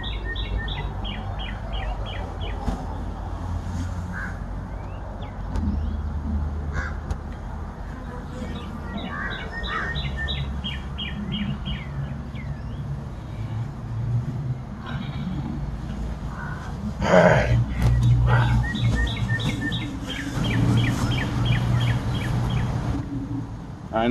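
A bird singing a short phrase of rapid high notes, repeated three times, over a steady low hum.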